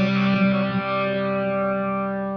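Electric bass guitar played through distortion: a chord struck just before, left to ring and slowly fading.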